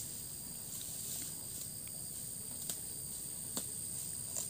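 Steady, high-pitched drone of insects such as crickets or cicadas, with a few faint soft clicks scattered through it.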